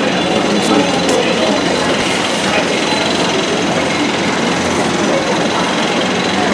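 Loud, steady mechanical noise with an even, rapid texture and no breaks or changes.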